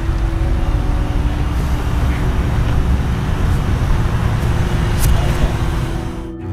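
Steady outdoor road-traffic noise: a constant low rumble with no distinct events, and a brief click about five seconds in.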